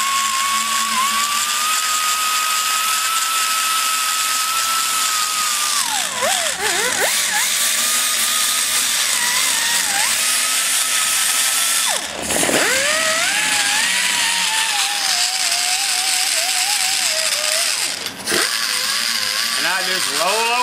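Die grinder running an abrasive stone against the valve seat and bowl of an aluminium cylinder head, blending out the marks left by the carbide burr. Its steady whine sags and recovers as the stone bears on the metal. It dips a few times and drops away sharply about two-thirds of the way through before spinning back up.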